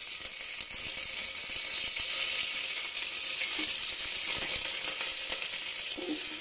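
Oil tempering with garlic and dried red chillies in an aluminium pot bursts into a loud, steady sizzle the moment fresh leaves are dropped in, with a metal ladle stirring through it.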